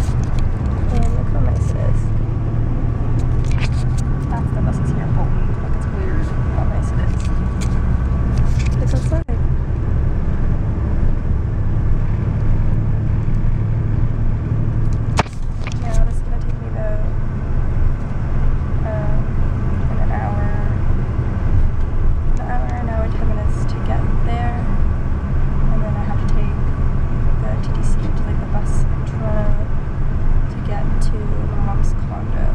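Steady low rumble of a bus in motion, heard from inside the passenger cabin, with a faint steady whine over it. Voices murmur over the rumble, mostly in the second half.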